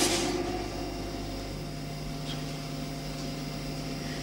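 A steady low electrical hum with hiss, several even tones held together, a lower tone joining in about a second and a half in. The echo of a shout dies away at the very start, and there is a faint tick about two seconds in.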